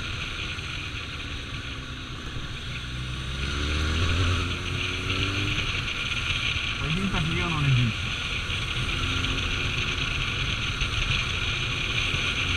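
Kawasaki ZRX1200 inline-four engine running as the motorcycle rides along, with steady wind rush on the microphone. The engine note strengthens and rises around four seconds in.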